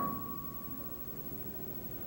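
A pause between sentences of amplified speech: room tone with a steady low hum, and a faint high steady tone that fades out about a second and a half in.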